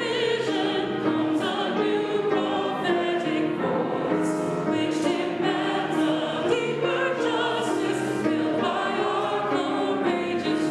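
Choir and standing congregation singing a hymn together, in long held notes that change about once a second.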